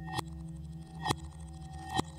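Experimental ambient electronic music built from manipulated recordings of a metal lampshade: a steady low drone with held tones under three metallic ringing hits about a second apart, the last two swelling up and cutting off sharply.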